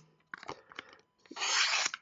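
Klecker Knives Slice's recurve tanto blade of 12C27 stainless slicing through a paper business card: a few faint paper crackles, then one slicing rasp about halfway through that lasts about half a second. The blade cuts the paper easily, a sign it is still sharp.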